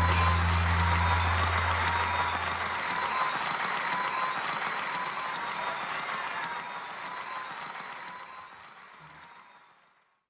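A band's last chord ringing out, its low bass note held for about three seconds, with applause; everything fades away gradually and is gone just before the end.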